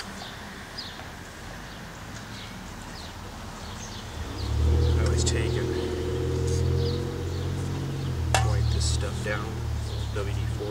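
A motor engine hum at a steady low pitch comes in about four seconds in and carries on, with a single sharp metallic click a little over eight seconds in.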